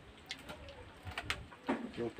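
A dove cooing faintly, with a few light taps of a knife on a cutting board as chilies are chopped.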